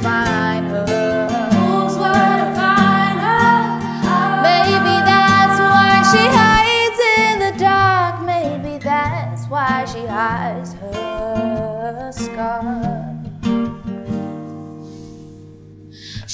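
A woman singing a slow song with acoustic guitar accompaniment, her voice holding and gliding on long notes. Near the end the music dies away to a quiet pause.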